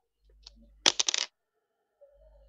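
A quick clatter of four or five sharp clicks of something small and hard, lasting under half a second about a second in, over a faint low hum.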